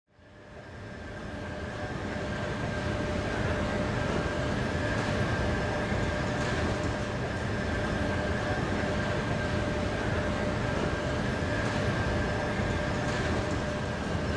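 Stadler FLIRT 3 electric multiple unit standing at a station platform, its onboard electrical equipment giving a steady hum with two constant high tones over a low rumble. The sound fades in over the first two seconds.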